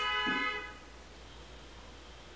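A vehicle horn honking: one steady held note that fades out within the first second.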